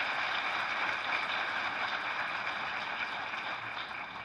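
Audience applause, holding steady and then fading away near the end.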